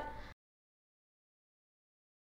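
A woman's voice breaks off in the first instant, then a hard cut to total digital silence.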